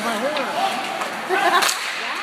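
Spectators' voices and calls in a hockey arena, with one sharp crack from the play on the ice about three-quarters of the way through.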